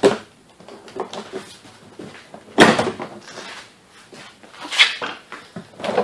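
Plastic trim clips of a 1996–2000 Honda Civic's interior door panel popping loose as the panel is pried off, with sharp knocks of the panel against the door: the loudest about two and a half seconds in, another near five seconds, and fainter clicks between.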